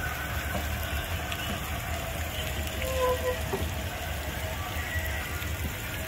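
Steady splashing of a garden fountain spraying into a pond, with faint music in the background and a brief voice or note about three seconds in.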